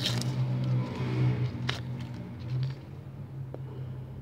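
Paper sticker packet being torn open and the stickers pulled out by hand: crinkling and rustling with a sharp crackle, over a steady low hum.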